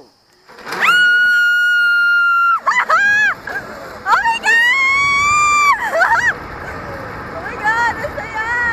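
A woman screaming with excitement as she rides a zipline: two long, high held screams, each about two seconds, each followed by short yelps, over wind noise on the microphone.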